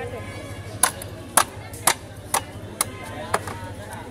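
Large broad-bladed knife chopping into a catla carp's body, six sharp chops about two a second.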